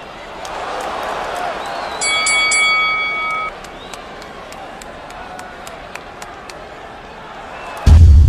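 Arena crowd noise, with a boxing ring bell struck several times in quick succession about two seconds in and left ringing for about a second and a half, signalling the end of the bout by knockout.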